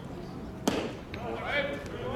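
A baseball smacking into a catcher's leather mitt: one sharp pop about two-thirds of a second in.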